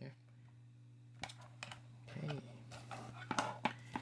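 Clicks and knocks of plastic connectors and a balance board being handled as a 6S LiPo balance lead is fitted to its socket, the loudest a pair of clicks near three and a half seconds, over a steady low hum.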